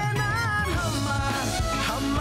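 A band playing a rock-style song: drum kit, bass, guitar and keyboard, with a lead melody that bends up and down in pitch.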